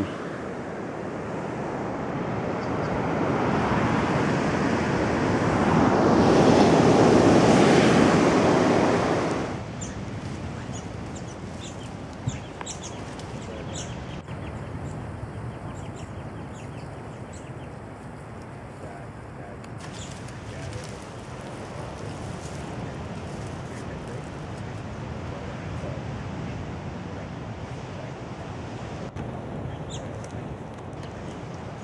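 Rushing surf and wind noise on a sandy beach, swelling for several seconds, then cut off suddenly about nine seconds in. After that comes quieter bush ambience with faint short bird calls.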